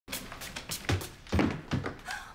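A sliding door opening and a wheeled suitcase being pulled through it: a series of knocks and thuds, the heaviest three in the second half-second to second and a half.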